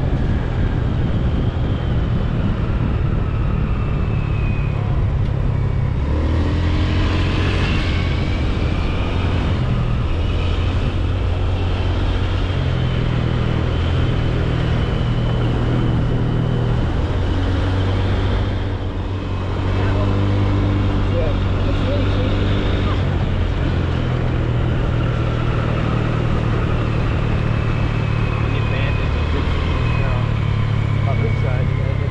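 Car engine and road noise heard while driving: a steady low hum that steps up and down in pitch as the speed changes, over constant tyre and wind noise.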